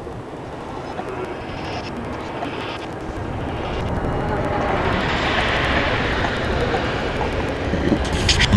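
A passing vehicle: its noise swells from about three seconds in and is loudest a little past the middle, over a background of voices.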